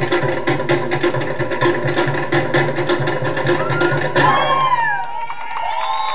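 Fast Tahitian-style drumming, with sharp wooden clacking strokes in a dense rhythm, stops abruptly about four seconds in. High, gliding whoops and cheers follow for about a second and a half.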